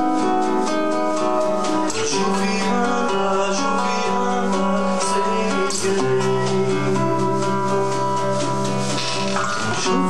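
Live acoustic band music: two acoustic guitars with piano and percussion playing a steady instrumental passage, many notes sounding together over a quick, even pulse.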